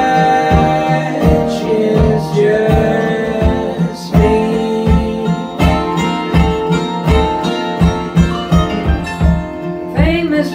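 Live acoustic string band playing: two strummed acoustic guitars and a mandolin, with a steady beat of about two to three strums a second.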